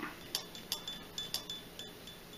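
Several light clinks of a pH meter's electrode probe knocking against a drinking glass, some with a brief faint ring.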